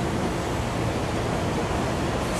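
Steady outdoor ambient noise from a high balcony: an even rushing hiss over a low rumble, from wind and the city and sea below.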